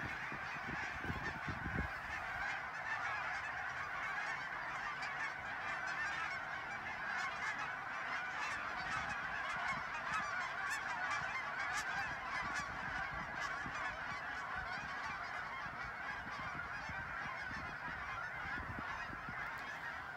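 A large flock of geese calling in flight: a dense, continuous chorus of many overlapping honks at an even level.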